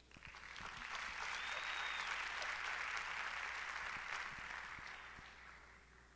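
Audience applauding. The clapping builds over the first second, holds steady, then dies away about five seconds in.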